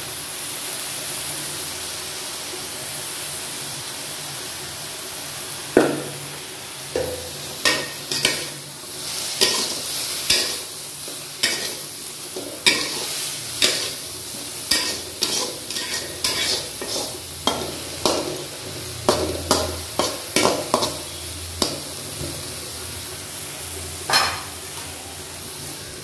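Food sizzling in hot oil in a cooking pan, with a spatula stirring and scraping against the pan in repeated irregular strokes, roughly one or two a second, from about six seconds in.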